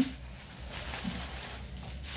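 Bubble wrap rustling and crinkling as it is handled and pulled from a packing box.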